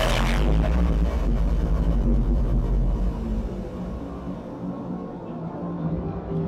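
Electronic music over the stage sound system, with a steady deep bass drone. A loud bright sweep cuts off about half a second in, and the music then slowly grows quieter.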